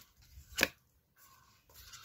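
Tarot cards being handled as a card is drawn from the deck: one sharp snap about half a second in, with faint card handling around it.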